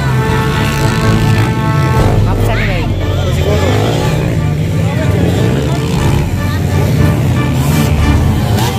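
Dirt bike engines revving, their pitch rising and falling around the middle, mixed with voices and a background music track.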